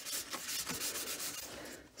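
Paper towel rubbing and dabbing over wet ink on a sketchbook's paper page, lifting some of the ink out: a quick run of soft scuffing strokes that stops just before the end.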